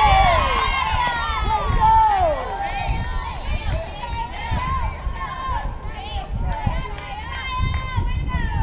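Several girls' voices shouting and calling out at once across a softball field, some calls drawn out, over a low, uneven rumble.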